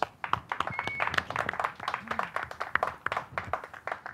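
A small group of people clapping, a scattered run of irregular claps.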